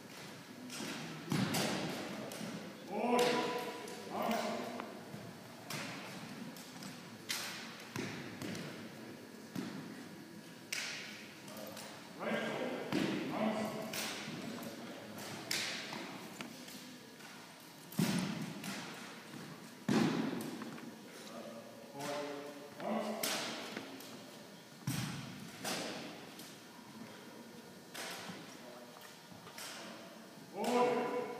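Two drill rifles being handled in an armed drill routine: a string of sharp, irregular slaps and knocks of hands and rifles, with some thuds, coming about every second or two.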